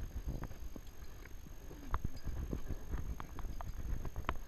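Footsteps of hikers walking uphill on a dry dirt trail, with irregular footfalls and sharp ticks as they brush through dry scrub, over a low rumble from wind and movement on the body-worn camera.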